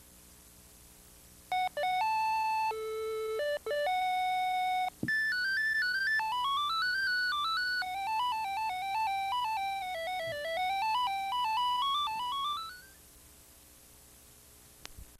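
Electronic beeping melody, like a ringtone or toy keyboard. A few long, steady beeps change pitch in steps, then a fast run of short notes climbs and falls before it stops near the end. A faint steady hum lies under it at the start and end.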